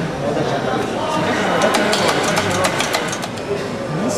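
Barista working at an espresso machine while making a latte: a quick run of sharp clicks, roughly eight a second, from about a second and a half in for some two seconds, over café chatter.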